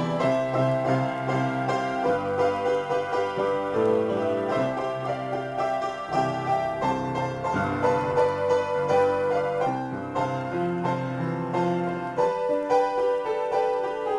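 Solo piano improvisation: a continuous flow of overlapping chords and melody notes in the middle register over a lower bass line, played without a pause.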